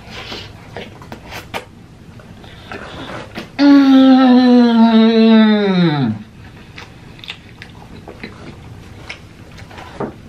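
A man chewing a mouthful of curry-soaked naan, with small wet mouth clicks, and about three and a half seconds in a long, loud closed-mouth "mmm" of enjoyment that holds for about two and a half seconds and drops in pitch as it ends; the quiet chewing goes on after it.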